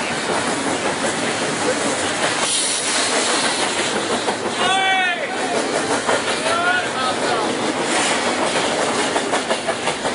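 Double-stack container freight train passing at speed close by: a loud, steady noise of wheels running on the rails.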